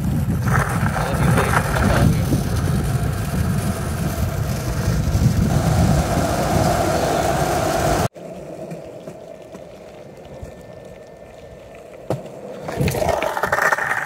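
Skateboard wheels rolling over rough asphalt: a loud, steady rumble that cuts off abruptly about eight seconds in. A much quieter rolling rumble follows, with voices starting near the end.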